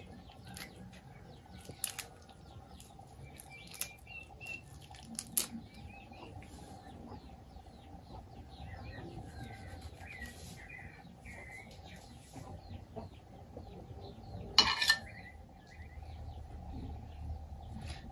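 Small birds chirping on and off, over faint clicks and scrapes of a knife cleaning raw shrimp, with one short louder rustle about fifteen seconds in.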